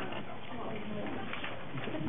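Indistinct background voices and murmur in a crowded room, with no one speaking clearly.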